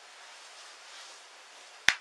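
Faint steady hiss of a small-room recording, with one sharp click near the end.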